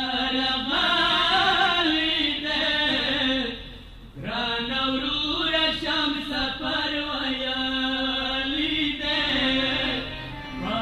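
A Pashto noha chanted in long, drawn-out melodic lines by a single reciter's voice, with a brief pause for breath about four seconds in.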